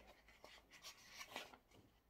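Faint rustling of paperback pages being leafed through by hand: a few soft, brief brushes of paper.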